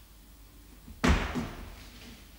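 A single loud thump about halfway through, ringing briefly in the bare room, followed by a softer knock.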